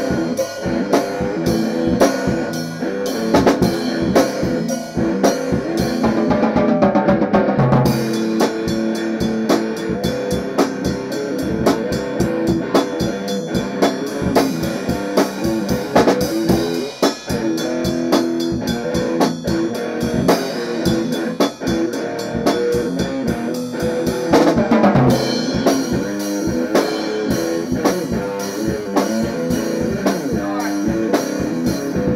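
Electric guitar played over a steady drum beat in a loud, continuous rock-style jam.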